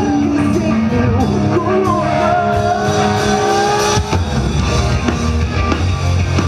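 Live pop-punk band playing a song, with electric guitar, drums and a sung melody line. The drums hit harder from about four seconds in.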